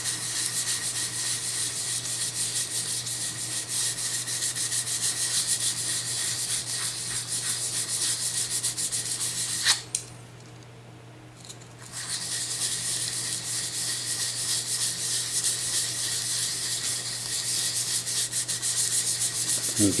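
220-grit sandpaper rubbing in quick back-and-forth strokes on a wooden shotgun stock wet with Tru-Oil, wet-sanding the finish into a slurry to fill the grain. It stops for about two seconds halfway through, then resumes.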